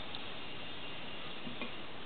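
Steady, even background hiss with a faint tick shortly after the start and another soft tick about a second and a half in.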